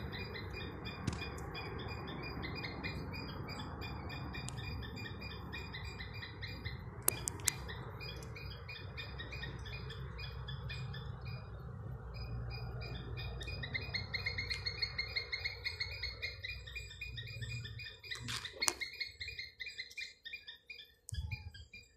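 A squirrel chirping: a rapid, evenly repeated string of short high-pitched calls that keeps going. A low rumble sits underneath, and there are a few sharp clicks.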